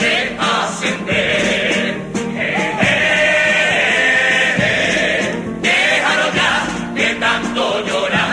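A Cádiz carnival comparsa choir singing a cuplé in harmony, with a long held chord in the middle that breaks off sharply about five and a half seconds in.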